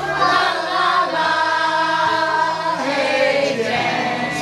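An amateur group of men and women singing a song together in a living room, holding long notes.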